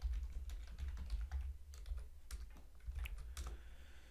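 Typing on a computer keyboard: a quick run of keystrokes that stops shortly before the end, over a low steady hum.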